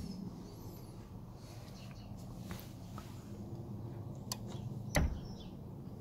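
Faint steady low hum with a few light clicks, and one dull thump about five seconds in.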